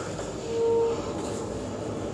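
Saxophone in a free-jazz improvisation: one short held note about half a second in, over a faint hiss.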